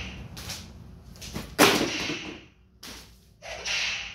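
A hand whip with a braided lash and wooden handle being swung and cracked: one sharp, loud snap about one and a half seconds in, with softer swishes before it and a short rushing noise near the end.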